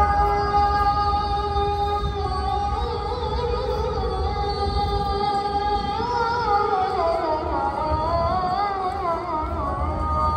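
A single voice chanting unaccompanied, holding long drawn-out notes that waver and glide in pitch about halfway through, over a steady low rumble.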